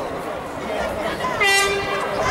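A horn sounds one short, steady blast about one and a half seconds in, over the chatter of a crowd.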